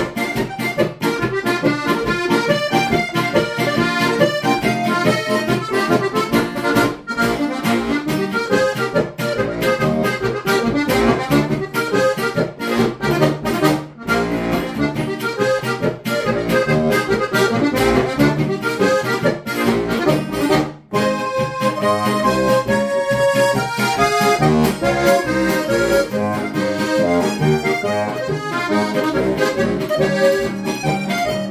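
Lanzinger diatonic button accordion (Styrian harmonica) playing a folk tune with quick runs of notes over a steady bass. About two-thirds of the way through there is a momentary break before the playing resumes.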